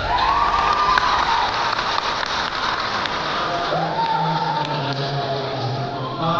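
Congregation applauding and cheering in a church, with a high drawn-out cheer at the start and another a little past halfway.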